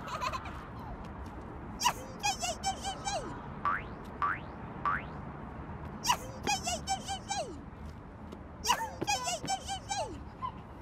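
Cartoon sound effects: three matching bursts of quick boinging, chirping notes, with three short rising whistle sweeps in between.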